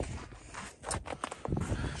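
Wind rumbling on a handheld phone microphone, with irregular small knocks and scuffs from handling as the phone is moved.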